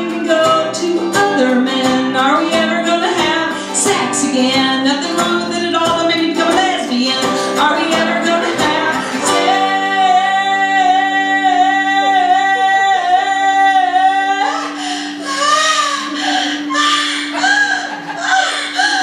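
Woman singing live to her own strummed acoustic guitar. About nine seconds in she holds one long note with vibrato for about five seconds over a ringing chord, then sings on.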